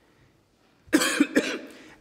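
A man coughs and clears his throat once about a second in, close to the microphone, after a brief hush.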